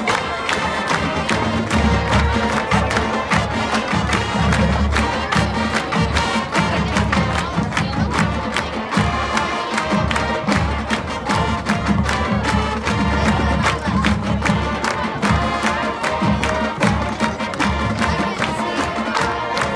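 A high school marching band and a middle school band playing together on the field: sustained wind-band chords over a steady drum beat, with crowd noise underneath.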